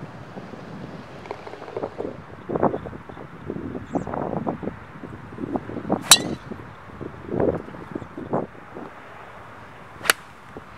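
Wind gusting across the microphone in irregular rumbles, with one sharp click of a golf iron striking the ball about six seconds in and another strike right at the end.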